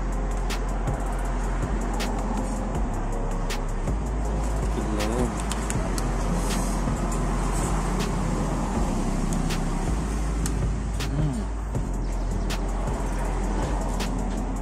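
Steady road traffic noise, with scattered sharp clicks of a metal spoon against a small aluminium egg pan.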